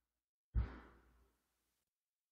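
Near silence, broken by one short, soft noise about half a second in that fades quickly; then the sound cuts to dead silence.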